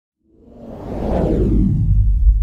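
Whoosh sound effect for an animated title reveal. It swells up out of silence about a third of a second in, sweeps downward in pitch and settles into a deep, loud rumble.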